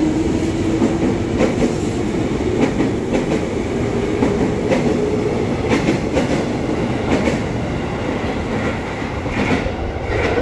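An electric commuter train (KRL) moving slowly along the platform, its motor hum rising a little, with the wheels clacking over rail joints about once a second.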